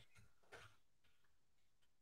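Near silence, with a few faint, soft ticks.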